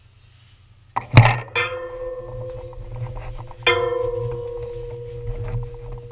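Metal struck twice, about a second in and again about two and a half seconds later, each strike leaving a clear ringing tone that hangs on.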